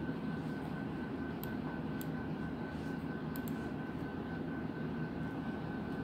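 Steady low machine hum with a faint, thin high tone held through it, and a few faint ticks about one and a half, two and three and a half seconds in.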